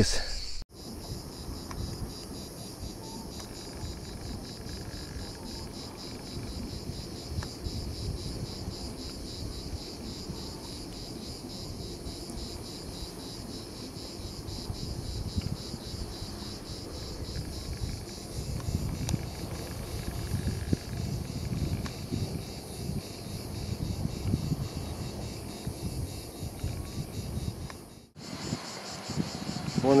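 A steady, high-pitched insect chorus with a fast, even pulsing, over a low, uneven rumble.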